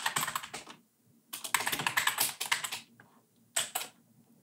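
Typing on a computer keyboard: quick runs of keystrokes in three bursts, the longest in the middle, with short pauses between.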